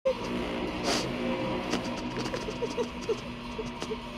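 A woman whimpering softly in short, broken sobs over a steady hum, with a few sharp clicks, the loudest about a second in.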